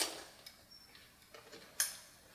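Faint light metallic clicks and ticks from a steel door's push-bar hardware as the door swings open, with one sharper click near the end.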